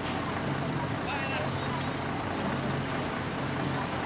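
Steady drone of a motor vehicle engine in street noise, with faint voices.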